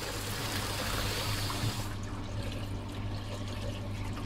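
Water hissing through a brass gate valve as its handwheel is turned shut. The hiss stops abruptly about two seconds in as the valve closes fully, leaving a steady low hum.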